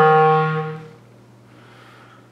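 A 1938 Buffet-Crampon Model 13 B-flat clarinet ends a descending run on a held low note, which fades out about halfway through.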